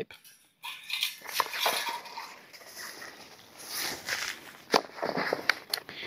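Rustling and crinkling of packaging, paper and the fabric case as the contents are rummaged through and pulled out, with a few small clicks and knocks.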